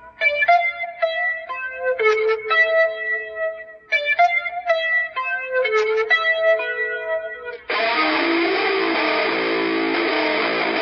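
Electric guitar picking a clean, ringing figure of single notes, played as two similar phrases. Near the end it switches abruptly to a loud, dense dirty sound: several pedals and the pickup selector switched at once, the transition from the clean intro into the distorted groove.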